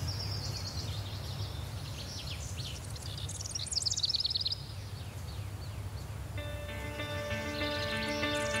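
Birds singing in quick, high chirping trills over a low steady rumble. Soft sustained music chords fade in about six seconds in.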